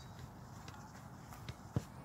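A foot touching a soccer ball in a pull-push drill: a few faint taps, then one sharp tap near the end.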